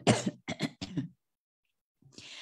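A woman clearing her throat three times in quick succession within about the first second, right after a cough.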